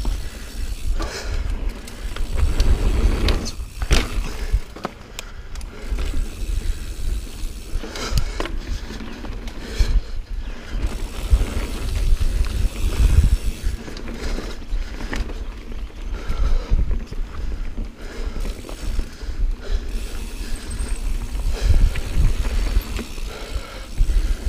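Niner Jet 9 RDO mountain bike rolling fast down dirt singletrack: a continuous low rumble of tyres and wind buffeting on the camera, with frequent knocks and rattles as the bike runs over roots and bumps.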